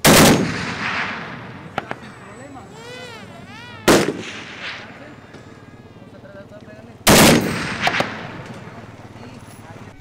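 Tripod-mounted machine gun firing three times, about three to four seconds apart: a short burst, a single shot, then another short burst. Each trails off in a fading echo.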